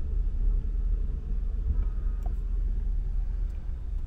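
Ford F-250 Super Duty pickup's engine idling, a steady low rumble heard from inside the cab.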